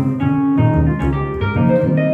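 Live duo of a plucked upright double bass and a keyboard playing together, with a walking low bass line under busy keyboard chords and melody, the notes changing several times a second.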